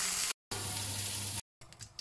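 Beef rib pieces sizzling as they sear in hot oil in a pot, browning the meat to leave cooking juices on the bottom. The steady sizzle breaks off twice in short silent gaps and is quieter near the end.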